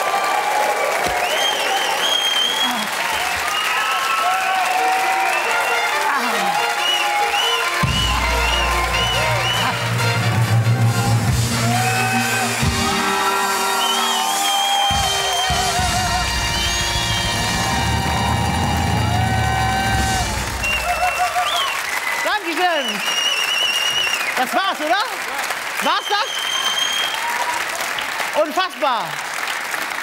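Studio audience cheering, whooping and applauding, with the live studio band playing from about eight seconds in until about twenty seconds in; the cheering carries on after the band stops.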